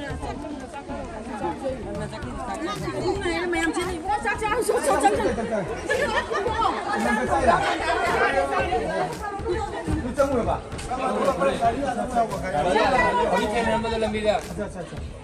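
Several people talking at once: overlapping conversational chatter from a group.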